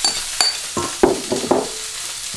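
Lamb fillets sizzling in a hot frying pan, a steady high hiss. In the middle come a few short wet rustles as dressing goes over shredded red cabbage salad in a steel bowl and hands start tossing it.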